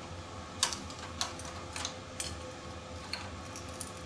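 A few sharp, scattered clicks and taps from a hot grilled oyster shell as it is pried open, over a steady low hum.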